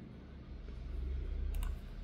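A low rumble that swells to its loudest about a second and a half in, with a single sharp computer keyboard click at its peak.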